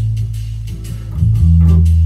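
Intro of a recorded minor blues in A minor starting up: a bass guitar holds a low note and drops to a lower one about a second in, with guitar and light ticking percussion over it.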